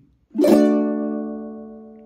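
A single ukulele chord strummed once about half a second in, then left ringing and slowly dying away.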